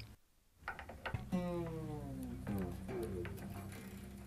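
The G string of a Martin acoustic guitar ringing and sliding down in pitch as its tuning peg is turned to slacken it, a second shorter fall following; a few small clicks come just before.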